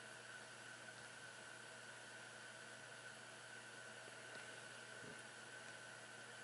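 Near silence: room tone with a steady faint hiss and a thin, steady high tone.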